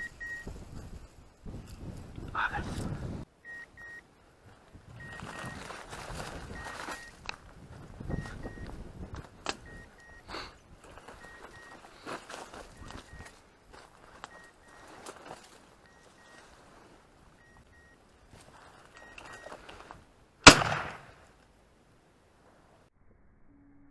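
A single shotgun shot about 20 seconds in, sharp and the loudest thing by far, with a short echoing tail. Before it come stretches of rustling brush and footsteps.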